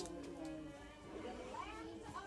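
Faint, indistinct voice in the background with some music under it.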